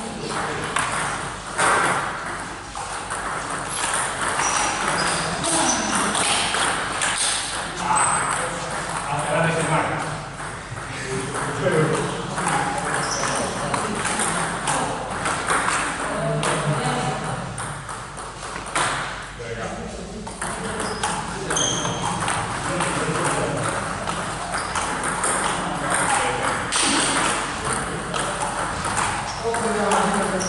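Table tennis balls clicking off rackets and tables in quick, irregular strikes, from rallies on more than one table.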